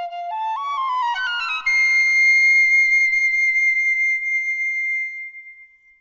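Solo piccolo playing a stepwise melody, then a quick upward run about a second and a half in to a long held high note that fades away near the end.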